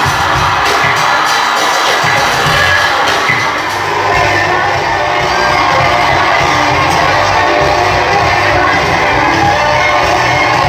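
Loud music from a cabaret show's sound system, with an audience cheering and shouting over it; the crowd noise grows a little fuller about four seconds in.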